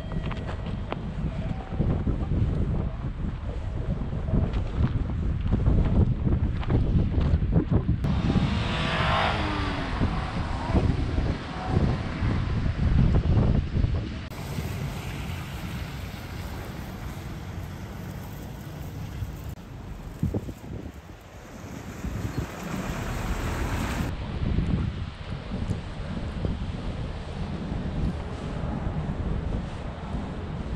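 Wind buffeting the microphone in a low, uneven rumble, with road traffic passing. It is loudest about six to fourteen seconds in.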